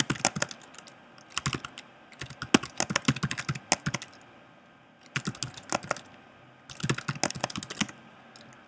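Typing on a computer keyboard in several quick runs of keystrokes with short pauses between them.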